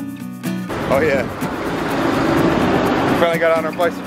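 Background music that cuts off abruptly under a second in. Wind then rushes over the microphone of a cyclist riding in street traffic, with a few short bits of a man's voice.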